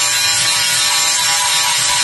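Handheld angle grinder with an abrasive disc grinding the rusted sheet-steel rocker panel of a BMW E36, running steadily under load.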